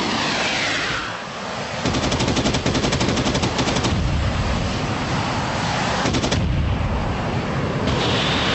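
Rapid automatic gunfire from fighter aircraft over a continuous low rumble: a falling rush of noise in the first second, then a long burst of rapid shots about two seconds in and a shorter burst about six seconds in.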